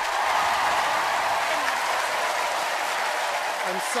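Studio audience applauding, a steady sustained clapping that runs under a man's voice starting near the end.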